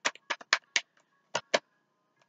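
A tarot deck being handled and shuffled in the hands, giving a run of about nine sharp, irregular card clicks in the first second and a half.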